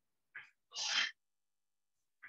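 A person sneezing once: a brief noisy onset followed by a louder, longer noisy burst about a second in.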